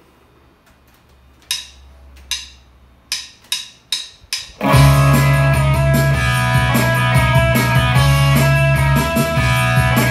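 A count-in of six sharp clicks, two slow then four quick, then about five seconds in an electric guitar and drums start together and play a rock song intro, loud and steady.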